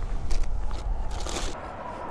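Rummaging and scraping in a plastic bait cooler, with short rustling bursts about a third of a second in and again around a second and a half, over a steady low rumble.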